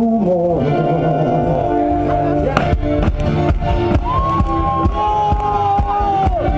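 Live folk-rock band playing. A sung line ends in the first half second, then an acoustic guitar strums on. Drums come in with a steady beat about two and a half seconds in, and a flute takes up a high, held melody line from about four seconds.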